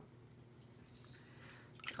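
Faint wet squishing of fingertips rubbing warm water into a drying face mask on the skin, re-moisturising it for exfoliation.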